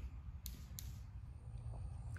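Quiet outdoor background: a steady low rumble with two faint high clicks close together in the first second.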